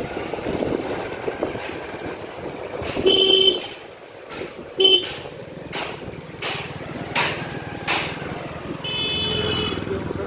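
A vehicle horn honks three times over the steady noise of riding: a honk of about half a second some three seconds in, a short one near five seconds, and a longer one near the end. A few sharp knocks come in between.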